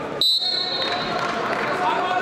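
A referee's whistle gives one short, shrill blast about a quarter second in, restarting the bout, with voices calling out in a large hall before and after it.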